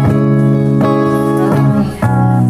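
Electric guitars playing ringing chords together, restruck about every three-quarters of a second, with no singing.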